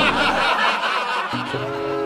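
Comic laughter sound effect edited in at a scene change. About 1.3 s in, background music with held notes takes over.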